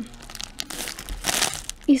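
A clear plastic bag full of plastic Easter grass crinkling irregularly as a hand rummages in it.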